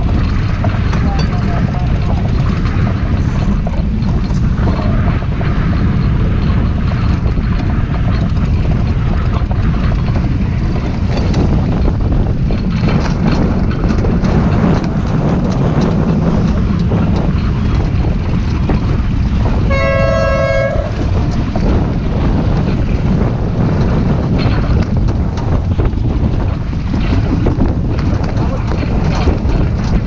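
Wind rushing over the microphone and water rushing along the hull of a sailboat under sail, a loud steady roar. About twenty seconds in, a horn sounds once for about a second.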